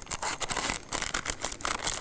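Parchment paper crinkling in quick, irregular crackles as a triangle of it is rolled and twisted by hand into a piping cone.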